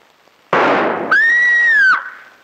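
A single gunshot about half a second in, followed at once by a woman's high, held scream that cuts off near the end.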